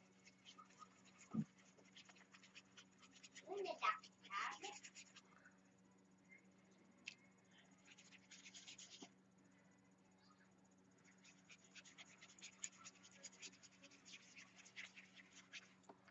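Faint scratching and ticking of a small paintbrush dabbing and scrubbing paint onto a paper journal page, over a steady low hum, with a short faint voice about four seconds in.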